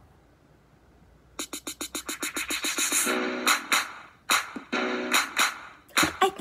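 Instrumental backing track of a pop show tune starting after about a second and a half of near-quiet, with quick, evenly pulsed plucked and keyboard chords and then held chords. A woman's singing voice comes in right at the end.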